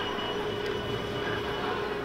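Steady engine drone with a constant hum: the racing-boat soundtrack of a motion-simulator ride playing through its speakers.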